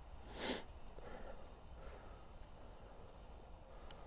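Quiet outdoor background with a short, breathy sniff or exhale about half a second in. Near the end comes a faint click as a putter strikes a golf ball.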